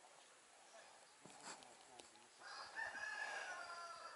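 A faint, drawn-out animal call, held about a second and a half, starting about two and a half seconds in. Two short clicks come before it.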